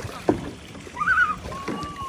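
Water sloshing and splashing as children turn the paddle wheels of small hand-paddle boats, with a sharp knock just after the start and a brief, high child's call about a second in.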